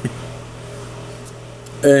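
A steady low hum of room noise through a pause in talk, with a short breath or rustle right at the start; a man's voice starts again near the end.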